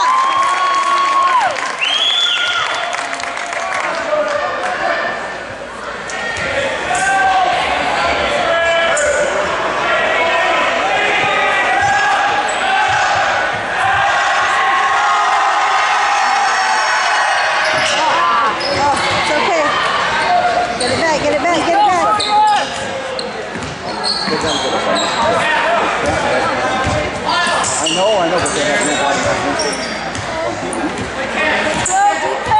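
Basketball game in a gym: the ball bouncing on the hardwood court and sneakers squeaking, over spectators talking and calling out.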